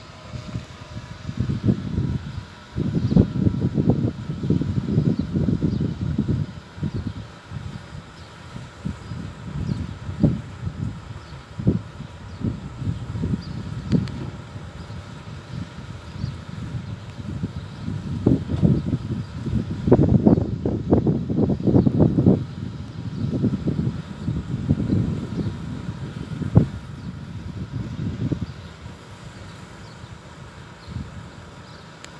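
Wind buffeting the microphone in irregular gusts: a low rumble that swells and fades, strongest about three to six seconds in and again around twenty to twenty-three seconds.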